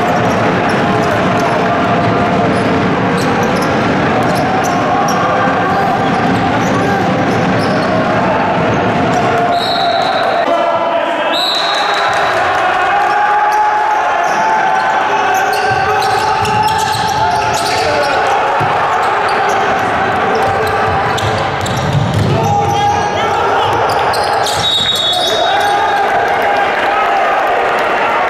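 Live basketball game sound in a large gym: the ball bouncing on the hardwood floor under a steady mix of players' and spectators' voices. Short high-pitched squeals cut through about ten seconds in, again a second later, and near the end.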